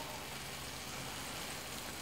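Faint, steady sizzle of a bacon-wrapped filet mignon fresh out of the oven.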